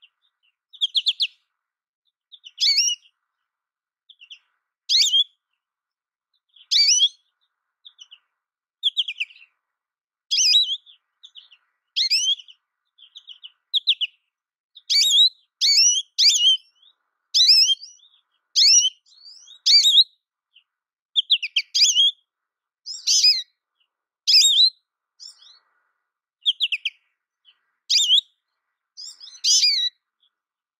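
American goldfinch calling: a series of short, high twittering chirps, each a quick sweep in pitch, coming every second or two and closer together in the middle.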